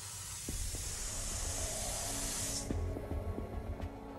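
Steam hissing out of an opened pressure-release valve, cutting off abruptly about two and a half seconds in, over low droning music.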